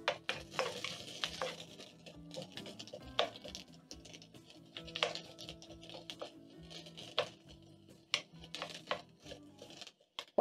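Wooden spatula stirring sliced onions in a non-stick wok, with frequent short, irregular taps and scrapes against the pan as the onions sauté in a little oil. Soft background music plays underneath.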